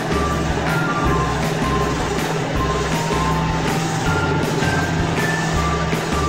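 Bright background music with a stepping melody and a regular bass beat, over the steady whirring hum of a small remote-control toy helicopter's rotors.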